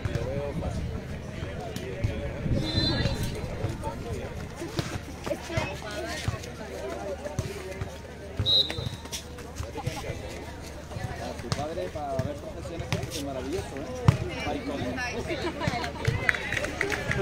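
Indistinct voices and chatter of several people outdoors, with two short high-pitched tones about three and eight seconds in and a single sharp knock about two seconds before the end.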